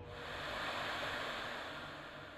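Television-static hiss as a sound effect: a rush of white noise that starts abruptly, swells over the first second, then slowly fades.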